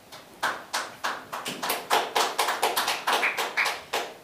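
Scattered audience applause, made of distinct, irregular hand claps rather than a dense wash.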